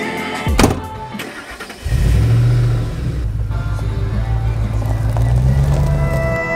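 A pickup truck's door shuts with a thump, and about two seconds later the engine starts and runs with a steady low hum, rising a little near the end, with background music also playing.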